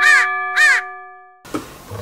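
An added editing sound effect: a bell-like chime rings and fades away by about one and a half seconds in. Over it come two short rising-and-falling tones about half a second apart, a playful 'hmm?' cue.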